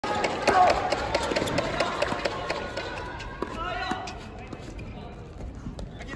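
Tennis doubles rally on an indoor hard court: a serve and then racket strikes on the ball as sharp clicks, with shoe sounds on the court and voices in the hall. It is loudest in the first second and quieter toward the end.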